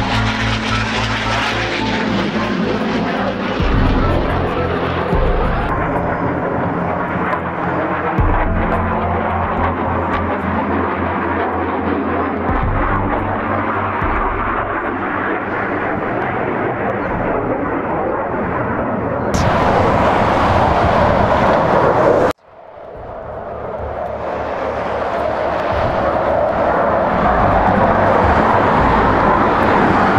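Jet roar from a RAAF F/A-18 Hornet's twin turbofan engines during a low display pass, with background music underneath. The sound cuts out abruptly about two-thirds of the way through, then the roar builds up again.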